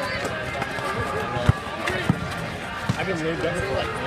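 A basketball bouncing on asphalt a few times, the loudest thud about a second and a half in, over the steady chatter of a crowd of onlookers.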